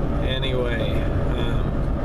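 Steady low rumble of a pickup truck on the move, engine and road noise heard from inside the cab.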